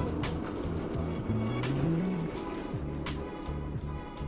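Background music with a steady beat and low bass notes.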